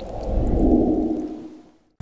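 Muffled water sound, as heard under the surface of a swimming pool, with the splash's brightness gone, fading away to silence near the end.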